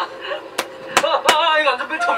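Three sharp clicks or knocks, a little under a second apart, starting about half a second in, followed by speech.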